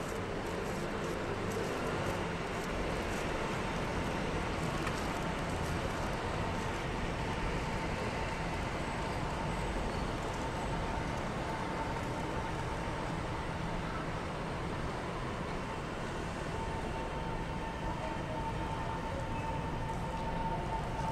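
Steady vehicle rumble of urban traffic, even in level throughout, with a faint thin steady whine running over it.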